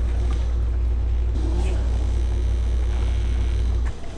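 De'Longhi combination coffee and espresso machine running with a steady low hum. The hum stops suddenly near the end.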